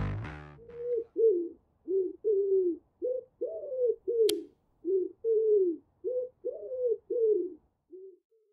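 Music fading out, then a pigeon cooing: about a dozen short coos, each rising and then falling in pitch, in loose groups. A single sharp click about four seconds in.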